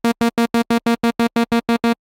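Serum software synthesizer playing a hand-drawn, roughened saw wavetable: one note repeated in short, even staccato hits, about seven a second, at a steady pitch. A slow LFO sweeps the wavetable so the wave shape, and with it the tone, keeps shifting slightly, imitating the imperfection of an analog synth.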